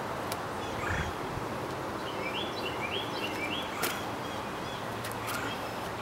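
Quiet outdoor ambience with a bird chirping three short rising notes in the middle. A dull low thud about a second in and a sharp tap near four seconds come from a freerunner's sneakers striking the stone during a cat leap onto a stone wall.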